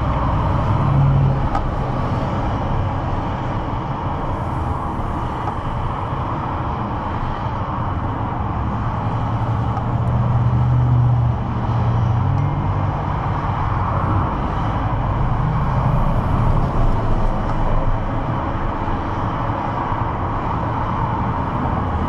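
Steady rumble of road traffic heard through an open car window, with vehicles passing that make it swell a few times, most strongly about ten to thirteen seconds in.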